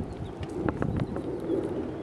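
A dove cooing faintly in the background, with a few light clicks about a second in over a low steady rumble.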